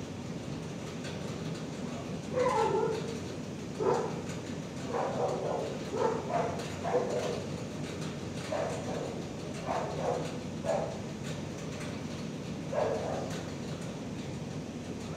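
Dogs barking and yipping off camera in a run of short, irregular barks, over a steady low hum.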